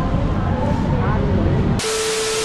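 Wind buffeting the microphone over outdoor background noise, with faint distant voices. Near the end, a burst of TV static hiss with a steady beep tone cuts in: a 'no signal' editing effect.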